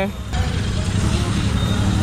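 Royal Enfield Continental GT 650's parallel-twin engine running at low speed as the motorcycle rolls up close, a steady low rumble.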